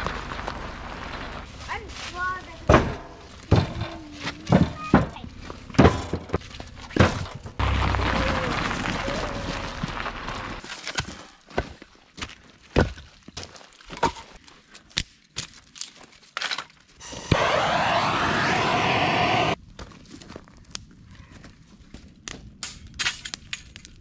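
Dry sticks and branches snapping as they are broken up for campfire kindling: a run of sharp cracks at irregular intervals, with thunks of firewood being set down.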